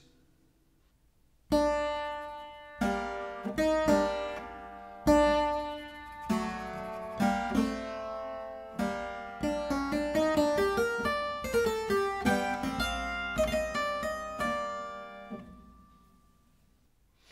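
A clavichord plays a slow Adagio passage of single notes and chords, starting about a second and a half in, with quicker runs in its second half. The second bar is played freely in rhythm, and its long dotted note is given Bebung, a vibrato made by varying finger pressure on the key.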